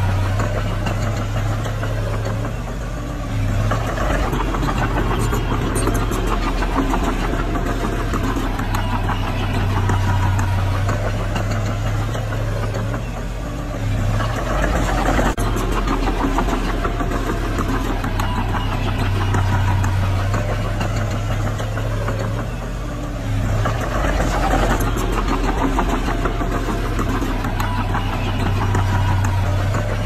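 Diesel engine of a small crawler bulldozer running steadily with a diesel clatter, swelling louder about every ten seconds as the machine works.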